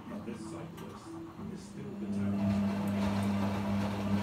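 A Hotpoint WM23A washing machine's motor starts about halfway through and runs as a steady hum, with the noise of the turning drum building over it. The machine is faulty: its motor surges, which the owner hopes a new timer will cure.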